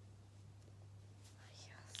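Near silence: a steady low hum under everything, with a faint whisper near the end.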